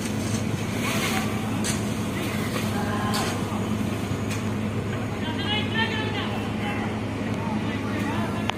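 Outdoor football match on artificial turf: players shouting to each other, and a few sharp kicks of the ball, over a steady low hum.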